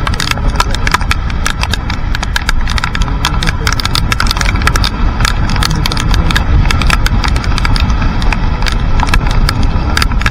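Raindrops ticking irregularly on a camera mounted on a moving motorcycle, many sharp taps a second, over a continuous low rumble of wind and the motorcycle running on a wet road.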